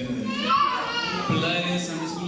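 People talking, with a high, child-like voice coming in about half a second in.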